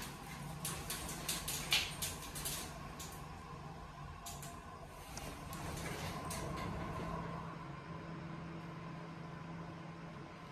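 Schindler 330A hydraulic elevator car in motion, heard from inside the glass cab: a steady low hum with a high steady whine above it. The cab rattles and clicks through the first three seconds and again around five seconds. The sound swells around six seconds, and the low rumble drops away about seven seconds in.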